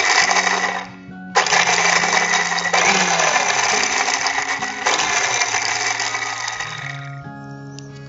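Electric mixer-grinder running in pulses, grinding raw peanuts, ginger and lemon juice into a coarse dressing paste. It stops briefly about a second in, starts again, and cuts off about seven seconds in.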